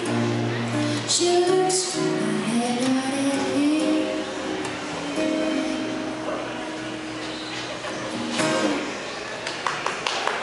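A woman singing live to her own acoustic guitar. Near the end a long held note stops, and a few sharp clicks follow.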